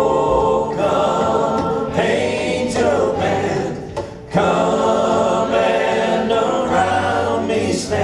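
A congregation and worship leaders singing a hymn together in long, held phrases. There is a short break for breath about halfway through.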